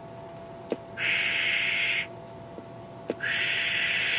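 Two bursts of steady hiss, each about a second long and each led by a sharp click, while the CB radio is keyed into the power meter.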